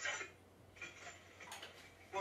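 A few faint, scattered clicks in a quiet room, after a brief faint sound right at the start; the sharpest click falls about one and a half seconds in.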